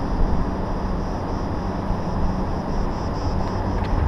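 Steady low rumble of outdoor urban background noise: distant traffic together with wind on the microphone.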